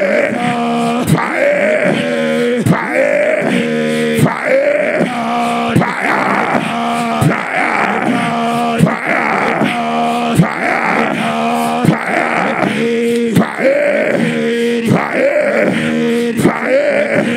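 A man praying loudly in tongues, a fast rhythmic chant of short repeated syllables without words. A sharp click comes about every second and a half.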